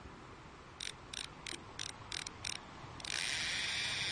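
Cartoon sound effect of a fishing reel ratcheting: six short clicking bursts, about three a second, then a louder continuous winding from about three seconds in.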